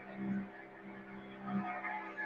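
Small fishing boat's engine running at sea with a steady low drone, swelling slightly twice.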